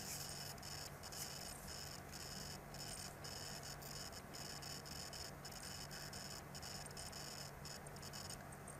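Faint steady hiss with a low hum: recording room tone and microphone noise, with no distinct sound events.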